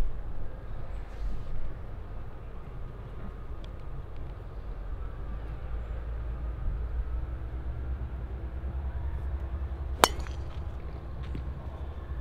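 A golf driver striking a ball off the tee: one sharp, metallic crack near the end, over a steady low rumble.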